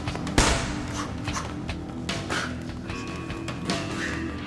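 Background music, over which boxing gloves hit punch mitts in sharp smacks. The loudest comes about half a second in and several lighter ones follow.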